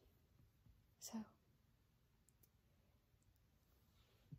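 Near silence: room tone, broken only by one short spoken word.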